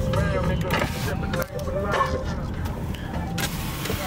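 Low, steady engine and road rumble inside a moving car's cabin, with people's voices over it in the first half and a brief hiss of rushing air near the end.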